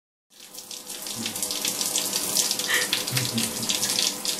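A shower running: spray from the shower head hissing onto the tiled walls of a shower stall. It starts about a third of a second in and builds over the first second, then holds steady.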